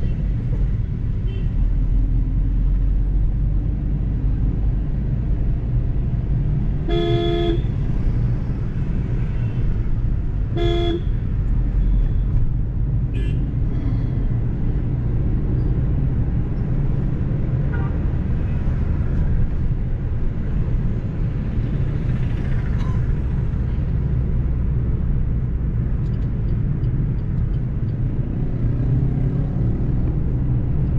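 Steady engine and road rumble inside a Suzuki Ignis's cabin on the move, with a vehicle horn tooting twice: a longer toot about seven seconds in and a short one a few seconds later.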